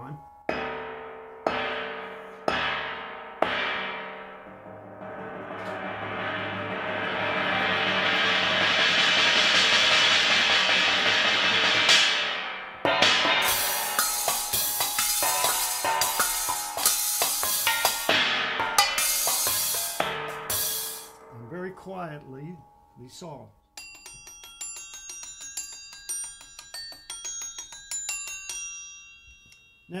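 Homebuilt metal percussion. A mounted stainless steel tray gong is struck with felt mallets: several single strokes that ring on, then a mallet roll that swells to a loud, sustained wash and is cut off about twelve seconds in. Then comes fast playing across cymbals made of metal plates and hole saws, some fitted with rattling rivets, followed near the end by lighter, sparse pinging strikes.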